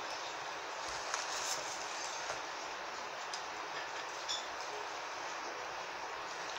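Steady background hiss of room noise, with a few faint clicks and rustles from flower stems and grass being handled and pushed into a glass vase.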